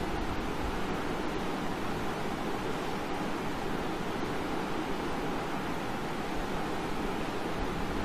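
Steady room noise: an even hiss with a low rumble underneath, unchanging throughout, with no speech.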